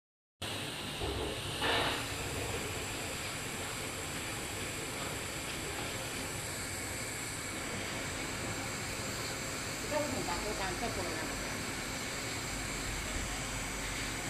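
FY800J heating-blade fabric slitter rewinder running, a steady even hiss with faint high steady tones as white fabric is slit into narrow strips and wound onto rows of small rolls. Faint voices come in about ten seconds in.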